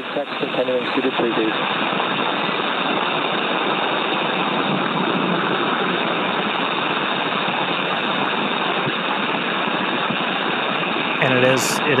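Steady hiss of air flowing through the crew's pressurized SpaceX EVA suits, picked up by their helmet microphones and heard over the crew radio loop.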